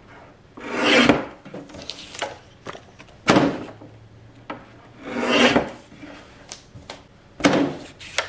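X-Acto guillotine paper cutter blade slicing through sheets of paper labels, four loud cuts about two seconds apart. Light rustles and clicks of the sheets being shifted on the cutter bed come between the cuts.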